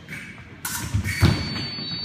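Fencers' shoes thumping on a wooden floor during an épée exchange, the heaviest stamp a little over a second in. At almost the same moment the electric scoring machine starts a steady high tone that holds on, signalling a touch.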